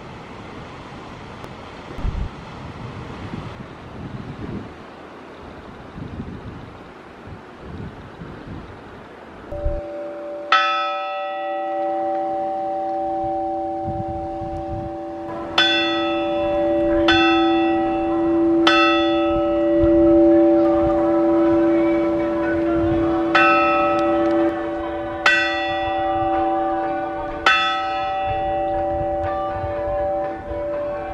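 The small hermitage bell of San Juan de Gaztelugatxe being struck, seven times in all: once about ten seconds in, then three strikes a second or so apart, then three more near the end, each note ringing on and overlapping the next. Wind noise on the microphone fills the first ten seconds before the bell.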